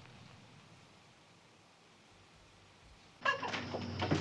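Near silence, then about three seconds in a sudden, louder sound with a wavering pitched call and a few clicks, most likely a house cat meowing.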